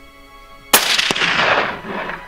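A single hunting rifle shot about three-quarters of a second in, its report trailing off over about a second.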